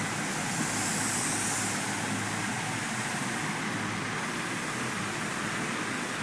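Steady background noise: an even hiss with a constant low hum underneath, slightly brighter in the treble for a second or so near the start.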